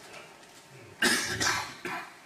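A person coughing: three loud coughs in quick succession, starting about a second in.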